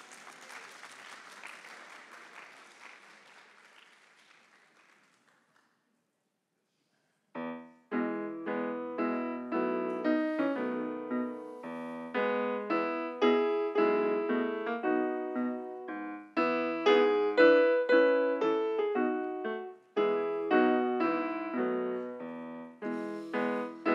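Light applause dying away over the first few seconds. After a brief silence, a digital stage piano starts a solo introduction about seven seconds in, with a steady run of chords and single notes.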